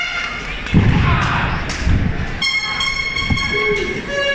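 A heavy thud about a second in, a wrestler's body landing in a wrestling ring, with further low knocks and crowd noise. A steady horn-like tone then sounds for over a second.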